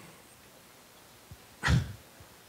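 Quiet room tone, then near the end one short vocal sound from a man at a microphone, falling in pitch.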